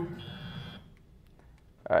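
A short, steady, high electronic buzzer tone lasting about half a second, then faint background hiss.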